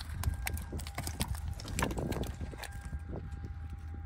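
Irregular sharp taps and knocks, several a second, over a low steady rumble, with a faint steady tone coming in about a second in.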